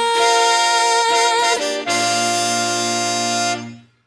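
A band with a horn section of saxophones, trumpets and trombone, over piano, bass and drums, holds the closing chords of a song. A female singer's held note with vibrato rides on top for the first second and a half, then a new full chord is held and dies away shortly before the end.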